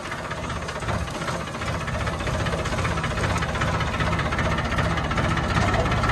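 Tractor's diesel engine running steadily, heard up close from the driver's seat.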